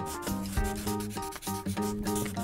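Quick scratchy strokes of a marker on paper as lettering is drawn, over a tune of short, quickly changing notes.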